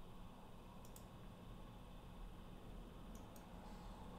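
Near silence: room tone with faint clicks, a pair about a second in and another pair just after three seconds.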